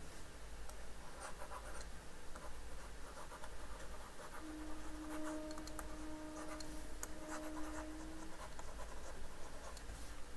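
Faint, short scratchy strokes of a stylus writing by hand on a tablet screen. A faint steady hum comes in for a few seconds in the middle.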